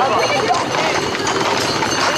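A crowd of people talking and calling out over one another, with the hooves of a group of walking Camargue horses clip-clopping on the paved road.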